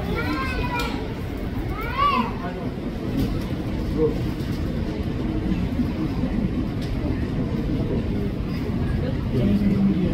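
Voices calling out a few times in the first couple of seconds, with a child's voice among them, over a steady low rumble of airport and aircraft noise.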